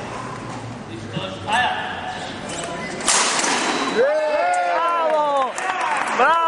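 Murmuring voices in a hall, then about three seconds in a sudden burst of noise, followed by a voice calling out in one long drawn-out shout that rises and then falls in pitch.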